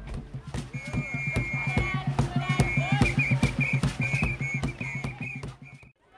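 Traditional dance troupe performing live: a busy run of percussive beats under singing voices, with a high, shrill whistling tone that holds steady at first and breaks into warbling trills from about halfway through. The sound drops away suddenly just before the end.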